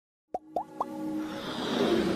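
Logo-intro sound effects: three quick plops, each rising in pitch, about a quarter second apart, then a swell of electronic music building up.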